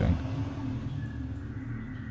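Low, steady ambient drone with a faint hiss above it, fading a little over the two seconds.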